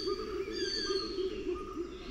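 Bird-call ambience, likely a wildlife sound bed: a fast run of short, low repeated calls, about five a second, with thin high whistled chirps above them.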